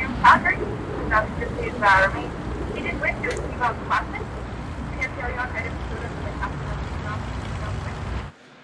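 Airport ambience: a steady low rumble of vehicles with short snatches of indistinct voices, busier in the first few seconds.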